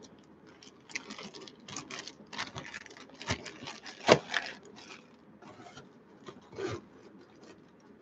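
Plastic bags and foil trading-card packs being handled and shuffled: irregular crinkling and rustling with soft taps, loudest about four seconds in.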